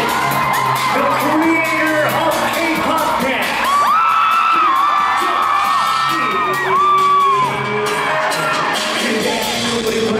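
Live concert audience cheering and screaming over music from the venue's speakers, with several long high screams in the middle of the stretch.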